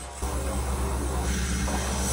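Soundtrack of an anime episode playing on a laptop: a steady low rumble with hiss sets in suddenly just after the start, with music faint beneath it.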